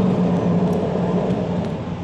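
A steady low hum over a constant rush of background noise.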